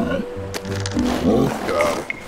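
Cartoon background music with a seal character's short vocal sounds, rising and falling in pitch.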